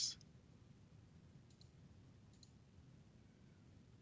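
Near silence: quiet room tone with two faint short clicks, about one and a half and two and a half seconds in.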